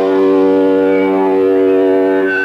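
Amplified electric guitar holding one steady droning note as a song ends in a live rock set.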